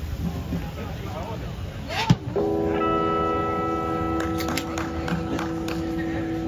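Faint chatter, then a sharp click about two seconds in, followed by a single chord from an amplified instrument that starts abruptly and is held steady without fading.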